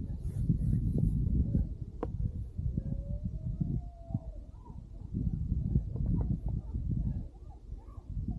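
Wind buffeting the camera microphone in uneven gusts during a downhill ski run, with the skis sliding on snow; a single sharp click about two seconds in.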